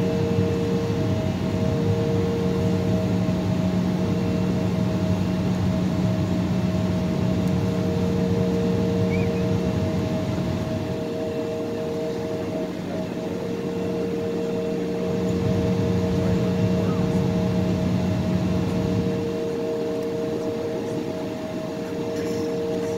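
Cabin sound of an Embraer E-175 jet taxiing, its two GE CF34 turbofans running at low taxi power: a steady hum with several held tones.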